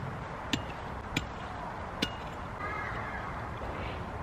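Three short sharp clicks, the first about half a second in and the last about two seconds in, over a low steady background rumble.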